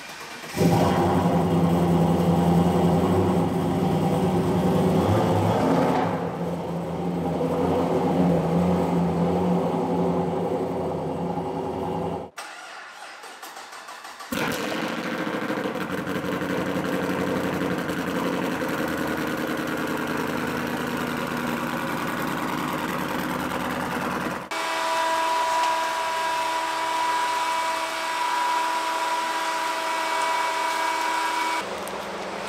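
Car engines started and run one after another: a Pontiac Trans Am WS6's V8 starts about half a second in and runs at idle with a deep exhaust note. After a brief gap, a second car's engine runs, and near the end comes a steadier engine hum with a high steady whine over it.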